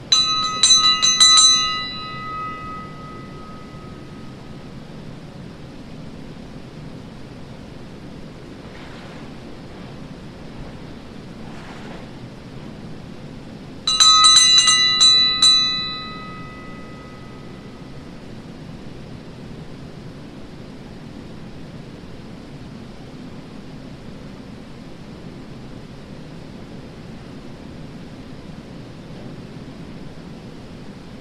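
A small bell rung in two short bursts of several quick strikes, one at the start and one about fourteen seconds later, each ringing on for a second or two and dying away. A steady low rushing noise runs underneath.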